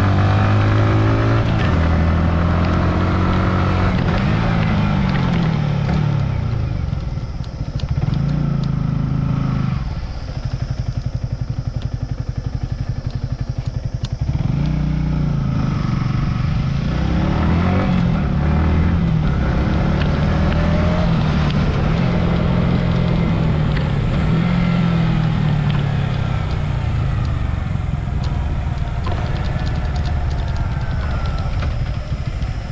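Yamaha R15 v3 motorcycle's single-cylinder 155 cc four-stroke engine heard from an on-board camera while riding. Its revs climb and drop back again and again, with a lower, steadier note for a few seconds in the middle.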